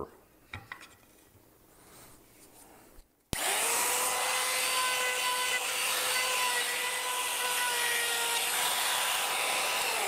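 Compact handheld trim router fitted with an eighth-inch roundover bit, running at a steady high whine as it rounds over the edge of a wooden slat. The sound starts abruptly about three seconds in, after a few seconds of near quiet with a few faint handling sounds.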